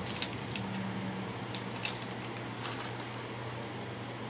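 Crinkling and small clicks of packaging as a makeup brush is taken out of it, sharpest in the first two seconds, over a faint steady low hum.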